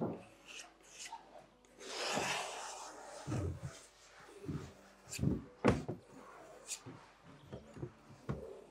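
Paintbrush scrubbing paint onto a stretched canvas for about a second, followed by several short dull knocks and a sharp click from handling at the wooden easel.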